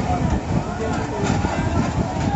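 Indistinct voices of people talking over a steady low rumble.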